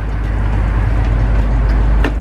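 Wind buffeting a handheld camera's microphone: a loud, steady low rumble with a rushing hiss over it.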